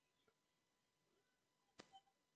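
Near silence, with one faint, short click near the end.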